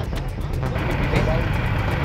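Steady road-traffic rumble from passing vehicles, recorded on a phone at the roadside, with people talking faintly in the background.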